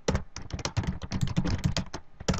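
Computer keyboard being typed on quickly, a fast run of many key clicks with no pause.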